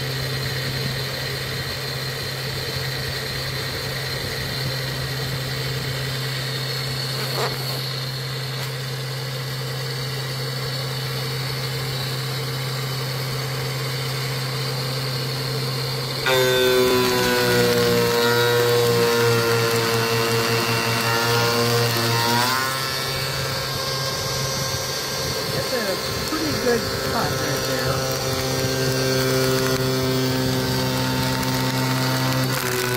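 Taig CNC mill with a BT30 headstock and 1200 W motor, its spindle whining steadily at about 7,900 RPM while a four-cutter 50 mm face mill takes a fast facing pass across a metal block. From about halfway, for some six seconds, the cut gets louder and sings with a wavering tone over the spindle whine, then eases back.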